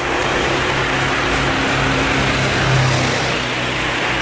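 A steady engine noise: a low hum under a broad rushing noise, swelling a little about three seconds in.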